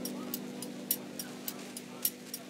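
Computer keyboard typing: single keystrokes clicking at an uneven pace, about three a second.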